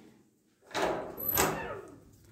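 A door being opened: a rush of noise lasting about a second, starting under a second in, with a sharp click partway through.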